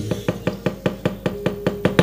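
A wayang kulit dalang's rapid dhodhogan: a run of sharp wooden knocks, about seven a second, from the cempala knocker striking the puppet chest between lines of dialogue.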